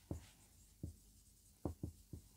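Marker pen writing on a whiteboard: four short, separate strokes of the felt tip against the board, the last two close together near the end.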